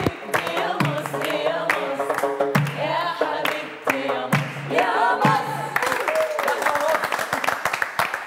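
A group singing together and clapping along in a steady rhythm; in the last couple of seconds the clapping grows denser as the singing thins out.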